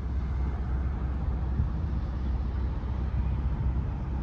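Nordhavn 43 trawler's diesel engine running, a steady low rumble heard from on deck.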